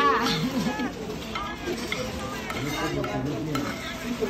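Restaurant dining noise: background voices of diners with a few short clinks of utensils against bowls and plates.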